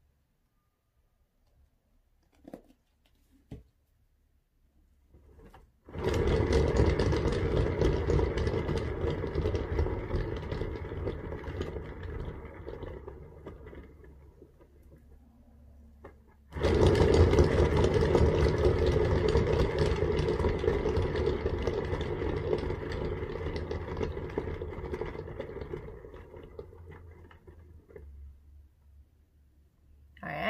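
A turntable carrying a wet acrylic-poured canvas, pushed into a spin by hand twice, about six seconds in and again after about sixteen seconds. Each time it whirs loudly, then grows steadily quieter as it coasts down. A couple of light clicks come before the first spin.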